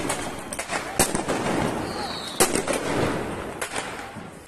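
Sharp bangs of grenades going off as clouds of smoke spread across a plaza, one about a second in, a loud one about halfway, and a couple more near the end, over a steady background din.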